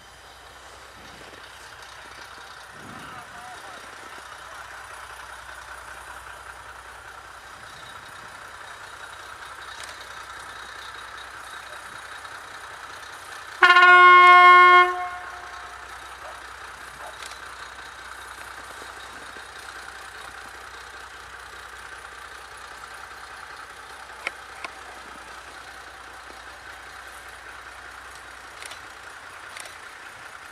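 A narrow-gauge diesel locomotive's horn sounds one held blast of about a second and a half, midway through. Around it is the steady running noise of the train passing.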